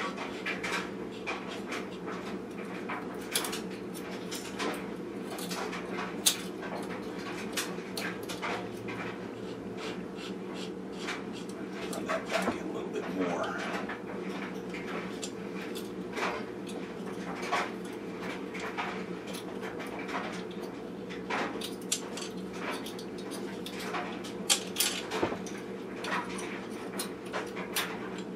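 Light, irregular metal clicks and taps of hand tools working on the mechanism of a 1914 Singer 127 vibrating shuttle sewing machine, over a steady low hum.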